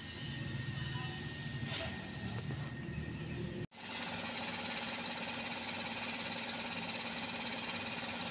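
A steady mechanical hum of a motor running in the background, cut off for an instant a little past halfway and then going on.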